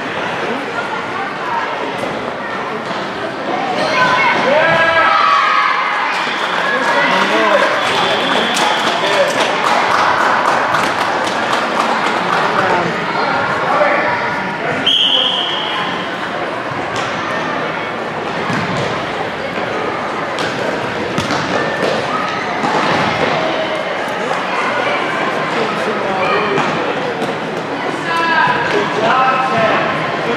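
A futsal ball being kicked and bouncing on the court, with repeated sharp thuds, under a steady mix of players' and spectators' shouts and chatter in a large hall. A short, high whistle blast sounds about halfway through.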